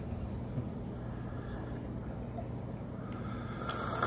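Quiet room tone: a steady low hum with no distinct events.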